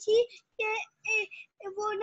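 A child's high-pitched voice in short, fairly level-pitched syllables, somewhere between talking and sing-song.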